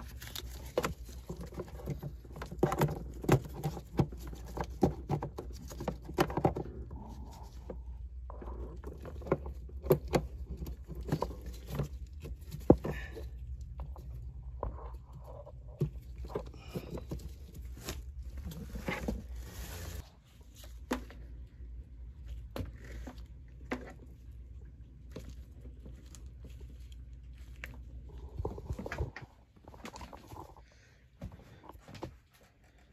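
Electrical cords and their plugs being handled and pulled: a run of scrapes, rustles, knocks and clicks of cable and connector against the cabinet and floor, over a low hum that drops off about twenty seconds in.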